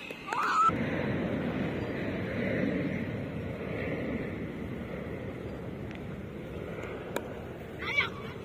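High-pitched young voices calling out briefly near the start over a steady rushing background. About seven seconds in there is a single sharp crack of a cricket bat striking the ball, followed by another shout.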